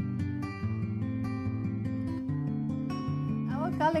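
Background music on acoustic guitar, a run of plucked notes at an even level.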